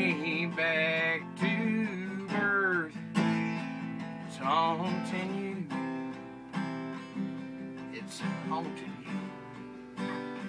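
Acoustic guitar strummed in chords struck every second or two and left to ring. A man's voice sings over it in sliding, wavering notes.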